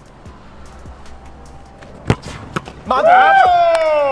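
A few sharp thuds of a football bounced on artificial turf, then a long, loud shout of "No!" that falls in pitch near the end.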